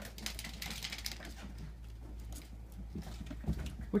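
Light, quick clicking and scuffling of ferrets and a cat playing on carpet around a plastic tube, busiest in the first second or so, over a steady low hum.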